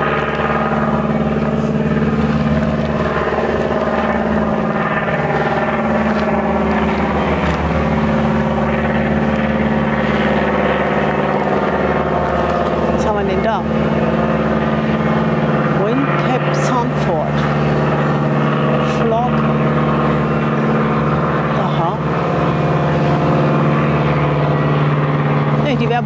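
Small aircraft flying overhead: a steady engine drone whose pitch shifts lower partway through as it passes.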